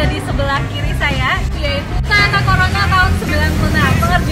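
A woman speaking over a steady low background rumble.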